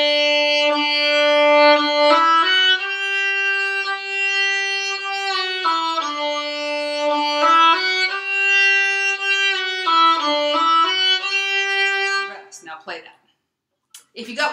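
Solo violin, bowed, playing a slow triplet exercise on a few neighbouring notes. The notes are held and step up and down in pitch, and the playing stops about twelve seconds in.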